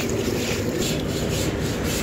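A steady, rough scraping and rubbing noise with quick irregular ticks running through it.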